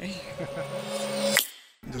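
Mostly a woman's voice trailing off at the end of her sentence, then a sharp click about one and a half seconds in, followed by a brief silent gap before another person starts speaking.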